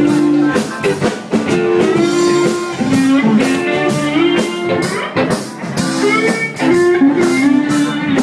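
Live blues band playing: electric guitar lines with bent notes over a drum kit beat, loud and steady throughout.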